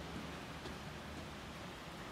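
Steady low background hiss of room noise, with one faint tick about two-thirds of a second in.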